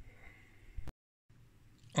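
Quiet room tone with one short, sharp click just before the middle, followed by a brief stretch of dead digital silence where the recording is cut.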